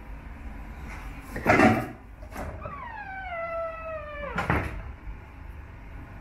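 Small minibar fridge being opened: a loud bump and a knock, then a long squeal that falls steadily in pitch for about two seconds and ends in another bump as the door swings open.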